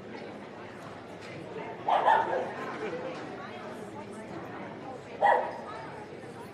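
A dog barking: a quick pair of barks about two seconds in and one more bark near the end, over the murmur of chatter in the hall.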